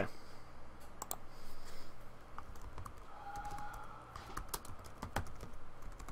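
Computer keyboard being typed on: quiet, irregular key clicks picked up by a desk or headset microphone.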